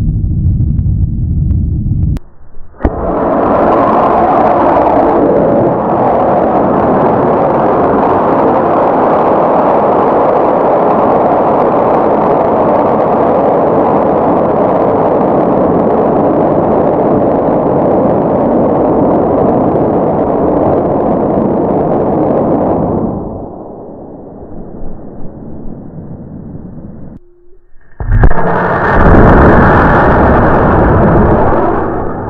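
Loud, steady rocket-exhaust roar that lasts about twenty seconds and then falls away. A second loud rocket launch rush begins about two seconds before the end.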